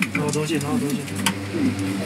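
A recorded woman's voice giving a Chinese-language narration, over a steady low hum, with a sharp click a little past halfway.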